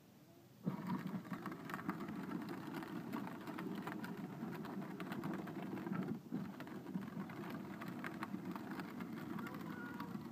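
Battery-powered Barbie ride-on toy jeep driving on asphalt: its electric motor and gearbox running and its hard plastic wheels rolling with a rough, crackly rumble. The sound starts suddenly about half a second in and dips briefly about six seconds in.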